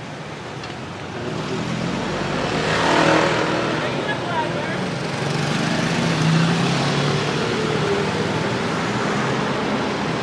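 Street traffic: a passing vehicle's noise swells to a peak about three seconds in, then a steady engine hum from road traffic carries on.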